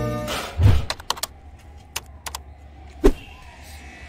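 Sound effects of an animated channel-intro title: a falling tone dies away in the first half second and a low thump follows, then scattered sharp clicks and pops, the loudest about three seconds in.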